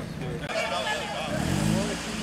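A convertible sports car's engine revving up briefly as it pulls past, rising in pitch over the last half-second, over people talking.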